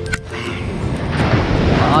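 Background music with a rush of noise that swells over the second half.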